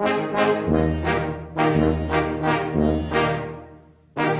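Brass band playing sustained chords, with long low bass notes about a second each beneath higher brass, the phrase dying away near the end.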